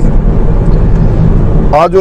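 Steady low rumble of engine and road noise inside a moving car's cabin. A man's voice resumes near the end.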